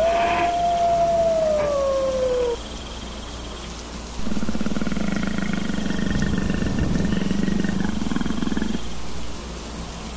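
Sound effects of a jackal's howl that trails off, falling in pitch, over the first couple of seconds. After a short gap, a low, rough animal growl lasts about four and a half seconds.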